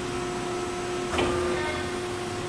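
FAMAR four-roll plate bending machine running with a steady hum; about a second in, a short burst of mechanical noise as the rolls start moving again, the automatic cycle resuming from the press of the green button.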